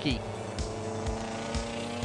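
A McLaren 12C GT3 race car's engine running on track, under background music with steady sustained notes.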